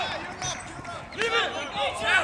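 Several people shouting and yelling over one another, louder in the second half.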